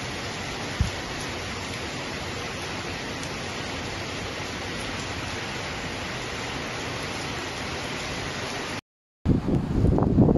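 Heavy rain falling steadily, an even hiss, with a single thump just under a second in. Near the end the sound drops out for a moment, then gives way to louder, gusting wind buffeting the microphone.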